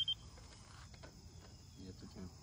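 A laser receiver's steady on-grade tone cuts off just after the start. It gives way to faint, steady, high insect chirring.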